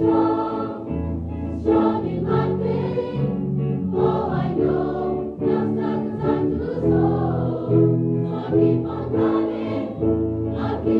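Large mixed choir of men's and women's voices singing in harmony, holding sustained chords that change every half second to a second.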